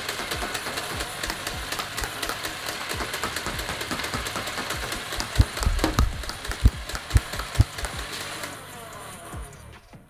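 Motorized belt-fed X-Shot Insanity foam dart blaster firing on full auto: a steady motor whir with a rapid run of dart shots, and a few heavy thumps in the second half. The firing stops about eight and a half seconds in.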